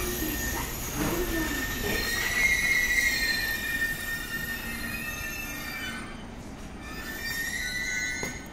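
JR East E491 series 'East i-E' inspection train pulling slowly into the platform and braking to a stop, with a steady high-pitched squeal that is loudest about two to three seconds in, eases off around six seconds and comes back just before it halts.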